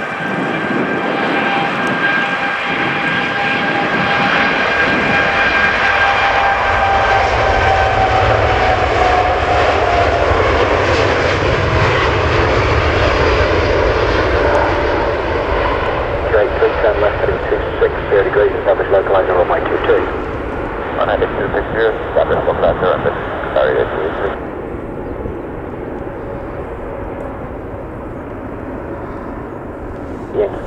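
Cargolux Boeing 747-8F freighter's four GEnx turbofans at takeoff power through the takeoff roll and climb-out: a loud, steady jet roar with a whine that falls in pitch as the aircraft goes past. Air traffic control radio chatter comes in over the engine noise in the second half.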